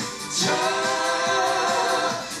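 Male singer singing live with musical accompaniment. About half a second in he begins one long held note.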